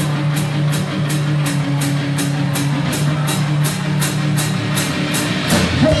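Live rock band playing an instrumental passage: a drum kit with a cymbal struck on a steady beat about three times a second, under sustained electric guitar chords, with a louder accent near the end as the vocal entry approaches.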